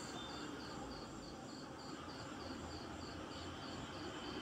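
Faint insect chirping at a steady rhythm, about three high chirps a second, over a low background hiss.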